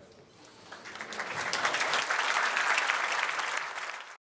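Conference audience applauding: the clapping starts about a second in, builds quickly, then holds steady.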